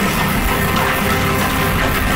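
A live rock band playing loudly, with a drum kit, electric guitars, bass and keyboards. Sustained cymbal wash fills the high end.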